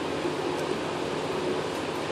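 Steady, even hiss with a low hum underneath and no distinct events, like a fan or other machine running in the room.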